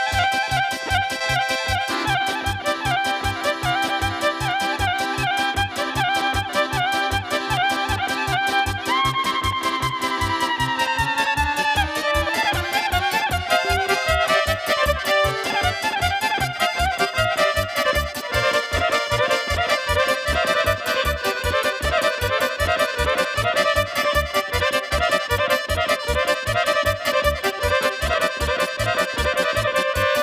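Instrumental intro of Bosnian izvorna folk music: an electric violin plays the melody over a keyboard accompaniment with a steady bass beat. The melody makes a long downward slide about nine seconds in.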